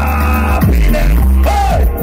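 Live music played loud through an outdoor stage sound system, with a heavy, steady bass line and a singer's voice over it.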